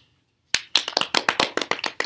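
Hand clapping: quick, sharp claps, about eight a second, starting about half a second in.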